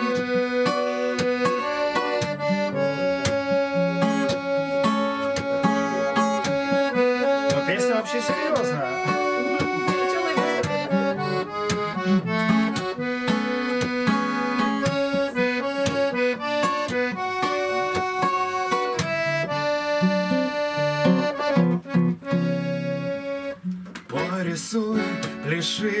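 Live acoustic folk music: an accordion plays a melody of held notes over strummed acoustic guitar, an instrumental lead-in before the singing. The music thins briefly a few seconds before the end, then picks up again.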